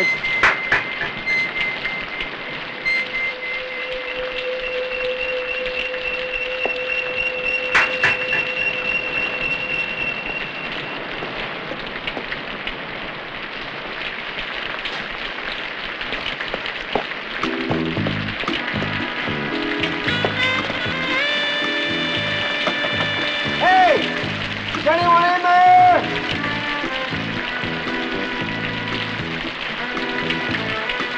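Steady rain falling throughout. Sustained eerie tones sound in the first third, and film-score music with low notes and wavering, rising and falling tones comes in a little past halfway.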